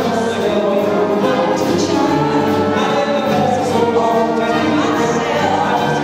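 Live big dance band playing, with a male and a female vocalist singing into handheld microphones over horns, double bass and drum kit, a steady cymbal beat ticking through.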